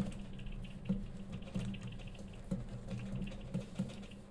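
A computer mouse being moved and clicked while a window is dragged across the desktop. It gives irregular soft clicks and knocks about once or twice a second, with a faint sliding hiss over the first half.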